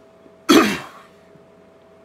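A man clears his throat once, a short harsh burst about half a second in.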